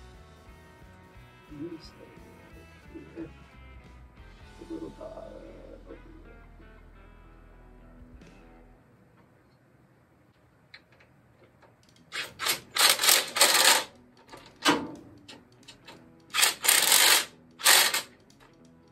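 Quiet background music for about the first nine seconds. Then, near the end, several short hissing bursts from an aerosol spray can, spraying sealant onto the timing cover.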